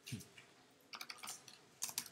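Faint typing on a computer keyboard: a key click at the start, a few more about a second in, and a quick run of clicks near the end.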